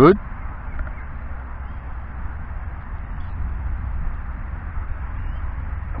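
Wind buffeting the microphone: a steady low rumble with a fainter hiss over it.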